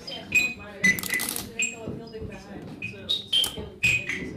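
Live-coded electronic music from TidalCycles: irregular short high-pitched blips and clicks, several a second, over faint voices.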